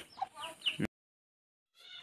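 A few short chicken clucks and calls, cut off abruptly just under a second in, then silence.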